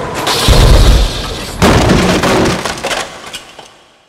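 Car crash sound effect: a heavy impact about half a second in, a second crash with breaking glass about a second later, then the noise dies away to silence.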